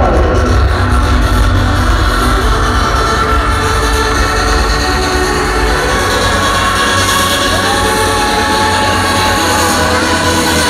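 Loud electronic dance music, a trance DJ set, played over a festival stage sound system and heard from within the crowd: a heavy, steady bass under sustained synth tones. A synth line rises about two and a half seconds before the end, holds, and drops away near the end.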